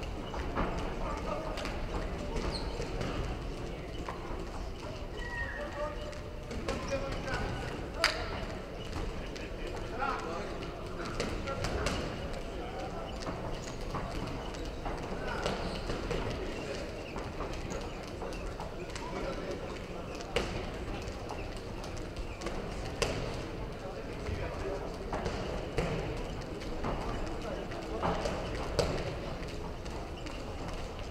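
Boxers' feet stepping and shuffling on the ring canvas, with a few sharp smacks of gloves landing, the loudest about eight seconds in; voices murmur and call out behind.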